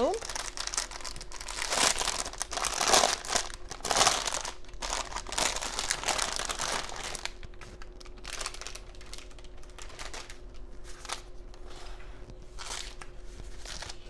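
Clear plastic packaging bag crinkling as it is pulled off an inflatable tube. The crinkling is busiest and loudest in the first half, then goes on more softly in scattered bits.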